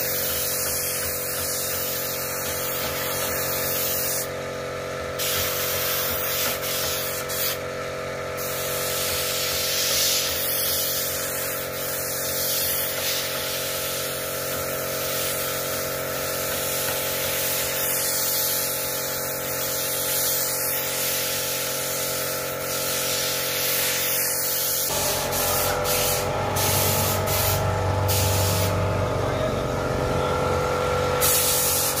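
Compressed-air spray gun spraying PU polish: a steady loud hiss that breaks off briefly twice in the first ten seconds. A steady machine hum runs underneath and turns into a louder, lower rumble near the end.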